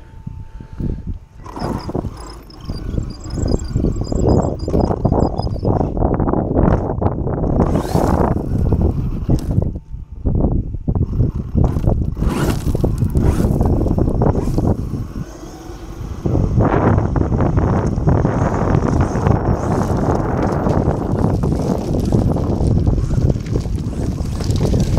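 Arrma Kraton 8S 1/5-scale RC monster truck driving over loose gravel, heard through a camera mounted on its body. Its tyres and the stones make a dense crunching, rattling rumble, with two brief lulls about ten and fifteen seconds in.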